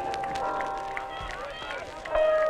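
A lull in the background music, with faint voices calling and a thin trace of music underneath.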